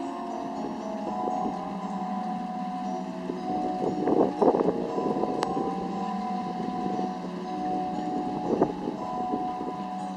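Eerie ambient soundtrack of a Halloween window-projection video, heard over speakers: held droning tones that shift in pitch now and then, with louder noisy swells about four seconds in and again near the end.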